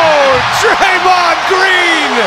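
Large arena crowd cheering loudly, with individual fans' whoops and yells gliding up and down in pitch over the steady roar.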